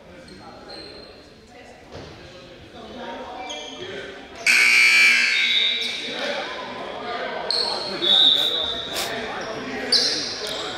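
Gym scoreboard buzzer sounding sharply about halfway through and holding for over a second, signalling the end of the stoppage. It is followed a few seconds later by a short, steady, high whistle blast, over voices echoing in the gym.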